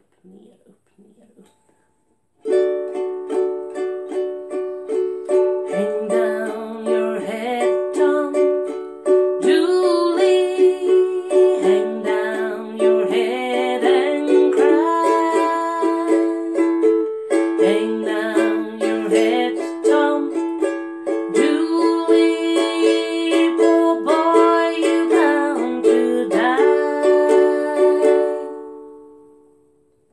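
Ukulele strummed down and up in a steady rhythm, changing between D and A7 chords. It starts about two and a half seconds in, and the last chord rings out and fades near the end.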